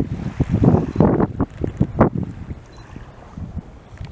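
Wind buffeting the microphone in irregular gusts, strongest in the first two seconds and easing after.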